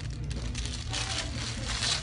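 Paper burger wrapper rustling and crinkling as it is peeled open by hand, louder in the second half, over a steady low hum.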